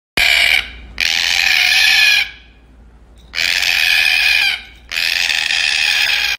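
Red-tailed black cockatoo screeching: four loud calls, the first short and the other three each more than a second long, with brief pauses between them.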